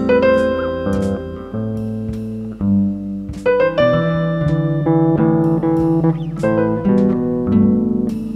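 Instrumental music: an electric bass guitar played along with a backing track, with struck piano-like notes and chords changing about once a second over the bass line.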